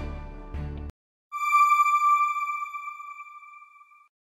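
Background music cuts off about a second in; after a brief gap a single bell-like electronic chime rings out and slowly dies away over nearly three seconds, the sting of a TV channel's logo end card.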